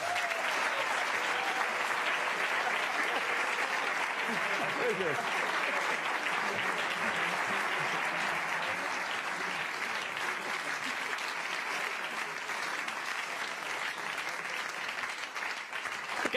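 A large audience applauding steadily, easing off slightly toward the end.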